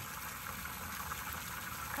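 Water running steadily into a trough as it is being filled: an even hiss with no breaks.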